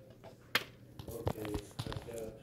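Plastic Battleship pegs being handled on the game board: one sharp click about half a second in, then a few lighter taps, with a faint murmured voice about a second in.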